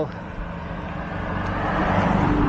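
A road vehicle approaching, its engine hum and tyre noise growing steadily louder.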